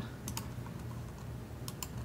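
Faint clicks of a desk computer's keyboard and mouse being worked: two quick pairs of clicks, one about a third of a second in and one near the end.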